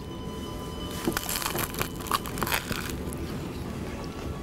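Crunching and chewing as a big bite is taken into a large crusty sandwich, a cluster of crackly crunches between about one and three seconds in. Faint background music underneath.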